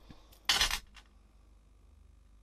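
A short, loud sniff about half a second in as a felt ink pad is smelled for its scent, followed by a faint click.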